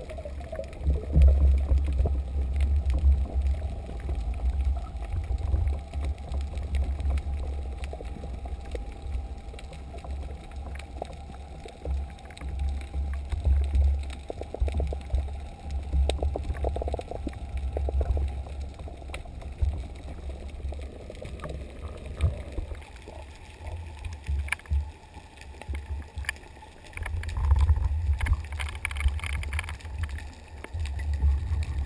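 Muffled underwater sound from a speargun-mounted camera in its housing as the gun is swum over a reef: a low rumble of water moving past the housing that swells and fades irregularly, with scattered faint clicks.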